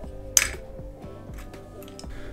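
Background music playing, with a single sharp clink of hard plastic about half a second in.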